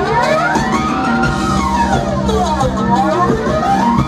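Tejano band music played live through a venue sound system, with a swooping sound that slides down and back up in pitch about every two seconds over sustained lower notes.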